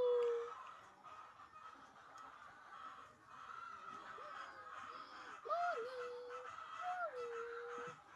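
Three drawn-out whining animal calls, each with a short rise and fall in pitch and then held steady: one right at the start and two close together near the end. A faint steady high tone runs underneath.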